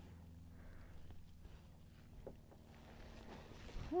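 Quiet handling as hands thread lugworm bait onto a fishing hook: a couple of soft clicks over a low steady hum.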